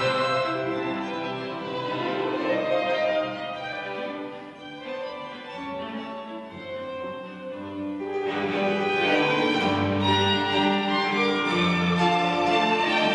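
Chamber string ensemble of violins, viola and cello playing classical music. The playing drops softer a few seconds in, then swells louder again about eight seconds in.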